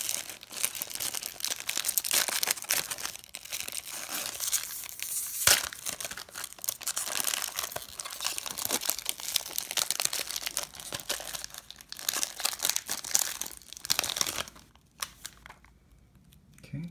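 Foil-lined Pokémon VS booster pack wrappers being torn open and crinkled by hand, a dense continuous crackle with one sharp snap about five and a half seconds in. The crinkling stops about a second and a half before the end.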